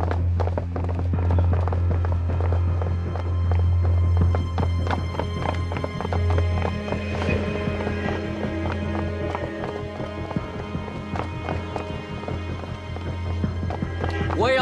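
Dramatic film score: a low sustained drone under held tones, driven by a fast, steady ticking percussive pulse.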